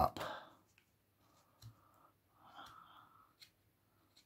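Knife paring thin shavings off the edge of a wooden spoon blank: two soft, faint slicing strokes, with a couple of light clicks.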